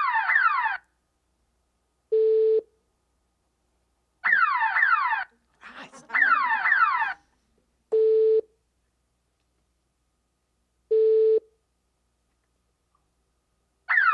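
Electronic test sounds for an auditory attention task: short steady beeps, the target, alternating with bursts of a fast-repeating falling siren wail, the distractor. The order is a siren burst, a beep, two siren bursts, then two more beeps, each beep about half a second long.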